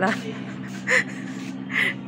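A woman's short breathy laughs, two soft bursts about a second apart, over a steady low hum.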